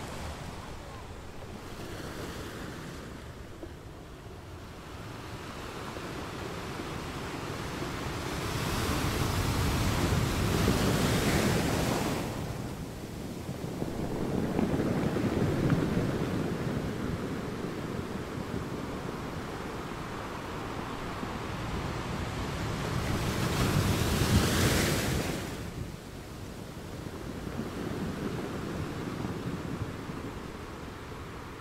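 Ocean surf breaking over a rocky pebble shore, rising and falling in slow swells, with the loudest breakers about a third of the way in and again about four-fifths of the way in.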